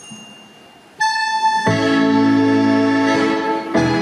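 Scottish country dance music for an eightsome reel: a single held note about a second in, then a long sustained opening chord, and the reel tune setting off in a brisk rhythm near the end.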